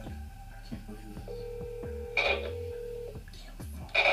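Telephone ringback tone from a call being placed: one steady ring of about two seconds over the phone's speaker, with a low pulsing background beneath it.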